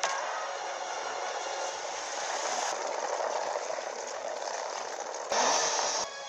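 Monster-battle film soundtrack playing from a TV, picked up off the set: a steady dense wash of effects and score, then a sudden louder burst about five seconds in.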